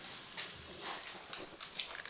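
Marker squeaking along a whiteboard as a straight line is drawn: one steady high squeak for about half a second, then a few short squeaks and scrapes.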